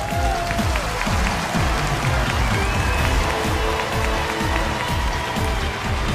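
Studio audience applauding over music with a steady beat.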